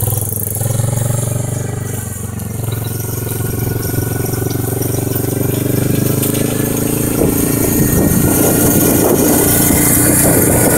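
Quad bike (ATV) engine running at a steady pace. It grows a little louder and rougher about seven seconds in.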